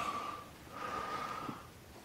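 A person's breath, a soft audible intake of air between words.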